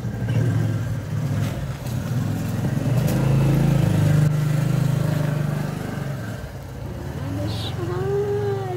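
A motor vehicle's engine hum that grows louder to a peak about halfway through and fades away near the end, as a vehicle passing by.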